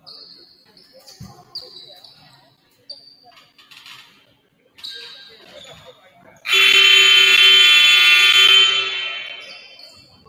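Gym scoreboard horn sounding one long, loud blast about two-thirds of the way in. It holds for about two and a half seconds and fades out into the hall's echo, signalling the end of a break in play. Before it come short high squeaks, like sneakers on the hardwood floor.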